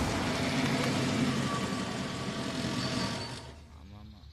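Car engine running as the SUV pulls up, fading out about three and a half seconds in.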